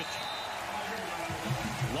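Steady hiss of football stadium field ambience under a television broadcast, with a low voice coming in about a second and a half in.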